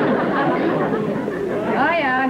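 Studio audience laughter, a dense wash of many voices, dying away near the end as dialogue resumes.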